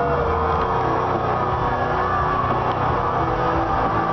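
Wrestler's entrance music played loud over an arena's sound system, with sustained held notes over a heavy low end.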